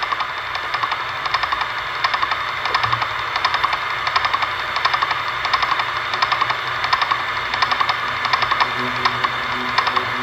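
Opening of an electronic music track: a dense, hissing noise texture pulsing in a quick, even rhythm. About nine seconds in, steady low sustained tones come in.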